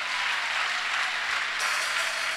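Congregation applauding steadily, many hands clapping together.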